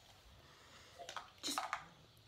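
Near silence for about a second, then a few brief soft sounds and one quietly spoken word in the second half.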